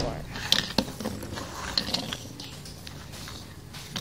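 Handling noise on a tabletop: a few sharp clicks scattered over low rustling as a toy car's card packaging and the phone are moved about.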